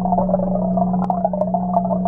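Aquarium aeration heard underwater: a steady low hum with a continuous bubbling gurgle from a stream of rising air bubbles, sprinkled with faint clicks.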